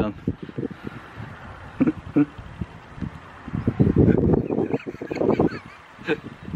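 Soil and leafy tops rustling and crackling as parsnips are pulled up by hand, busiest in the second half, with a short laugh from the gardener near the end.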